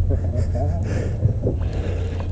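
Faint, muffled speech over a steady low rumble.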